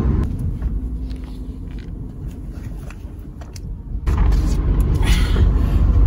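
Inside a moving car: a steady low engine and road rumble, fairly quiet at first, that jumps suddenly louder with more road and wind noise about four seconds in.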